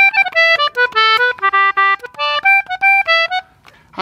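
An English concertina playing a short melodic phrase of about a dozen separate notes, tried out as a major-key idea for the tune's second part in G major. The phrase stops about three and a half seconds in.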